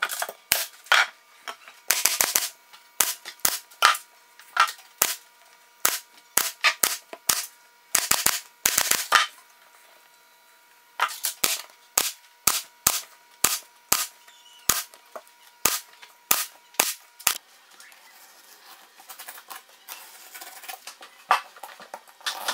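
Pneumatic upholstery stapler firing staples through fabric into plywood: sharp shots in quick irregular runs, sometimes several in rapid succession. The shots stop about three-quarters of the way through, leaving only quiet handling noise.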